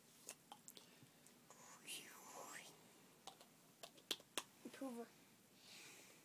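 Near silence: a child whispering faintly under her breath, with scattered small clicks and taps.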